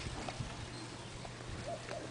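PowerJack 600W grid-tie inverter running, giving a faint steady low hum under quiet ambient noise.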